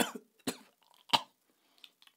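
A man coughing: two short, sharp coughs, about half a second and a second in.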